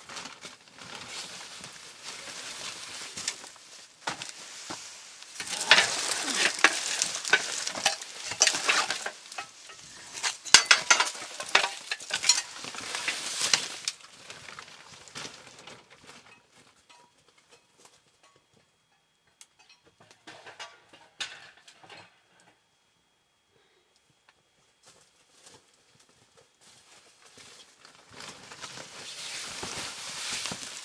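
Plastic bags and sheeting rustling and crinkling as they are handled and shifted, in dense bursts for the first half, then only scattered crackles before picking up again near the end.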